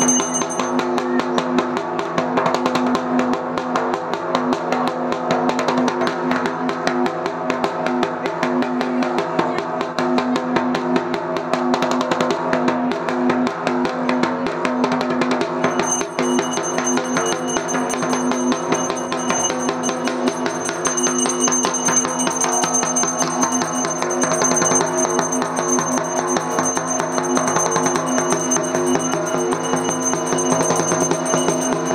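Fast, continuous drumming accompanying a puja arati, over a steady pitched backing. A high ringing tone drops out early on and returns about halfway through.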